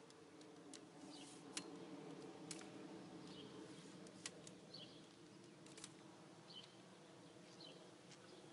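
Near silence, with a few faint clicks from the aluminium legs of a sprinkler tripod being handled and extended.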